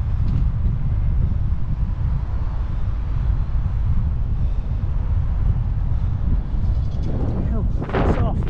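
Wind buffeting the microphone of a helmet-mounted camera on a moving bicycle: a steady, loud low rumble. Near the end, a brief louder sound with shifting pitch rises over it.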